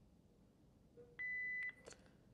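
Philips HeartStart MRx defibrillator giving one short, steady high-pitched beep about a second in, as its operational check moves on to its next prompt.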